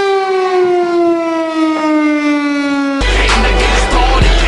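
Outdoor civil-defense warning siren on a tower, sounding one long tone that slides slowly down in pitch. It cuts off about three seconds in.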